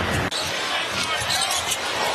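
A basketball being dribbled on a hardwood court, a run of short bounces over steady arena crowd noise.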